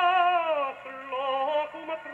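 A vocal 78 record played acoustically through a home-made gramophone with a Columbia No 9 soundbox and an eight-foot papier appliqué horn. A singer holds a note with vibrato that falls away about half a second in, then goes on with a quieter, lower phrase. The sound has no high treble.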